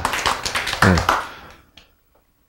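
A man laughing briefly: rapid breathy pulses with one short voiced note about a second in, dying away by about a second and a half.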